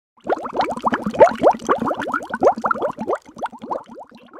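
Cartoon-style underwater bubbling sound effect: a rapid string of short rising bloops, about seven a second, growing softer and sparser in the last second.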